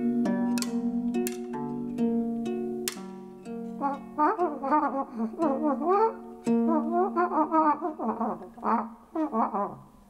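Homemade wind instrument made of coiled plastic tubing, played live: pitched notes held and stepping from one pitch to another for the first few seconds, then quick warbling slides up and down in short phrases that die away near the end.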